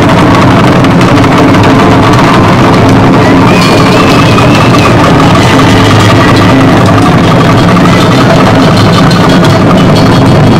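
Taiko ensemble drumming: several players striking large barrel drums (nagado-daiko) on slanted stands with wooden sticks, a dense, continuous barrage of strokes. Very loud, pushing the recording to its limit.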